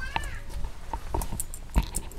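Footsteps on a dirt and stone path, a few uneven steps clicking and scuffing. A short, arching high-pitched call at the very start.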